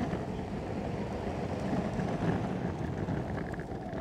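Electric skateboard rolling at speed over a rough stamped-concrete path: a steady low rush of wheel noise mixed with wind on the microphone.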